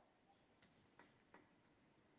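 Near silence, with three very faint clicks in the first half.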